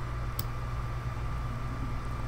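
Steady low hum and hiss of the recording's background noise, with a single faint click about half a second in.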